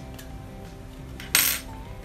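A metal crochet hook set down on a wooden tabletop: a single sharp clack about one and a half seconds in, fading quickly, over faint background music.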